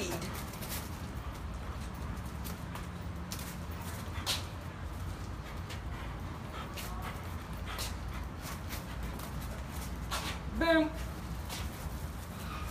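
Scattered light footsteps over a steady low rumble, with one short voice-like sound about ten and a half seconds in.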